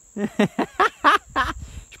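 A man laughing, a run of about seven short bursts at roughly four a second that die away after about a second and a half.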